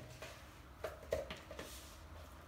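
Faint scuffing and a few soft knocks of hands kneading salt dough in a plastic mixing bowl, the knocks coming just under a second in, followed by a brief soft rub.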